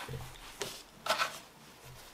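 Faint handling rustles: a few short, soft rustles of items being moved, as the folded t-shirt is picked up from the box contents.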